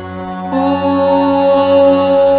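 Devotional mantra music: a low steady drone, joined about half a second in by a louder, long-held chanted note.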